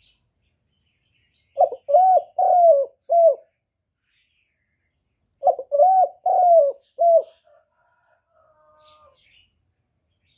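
Caged spotted dove cooing: two phrases a few seconds apart, each of about four notes, a short opening note, two longer notes and a short closing note.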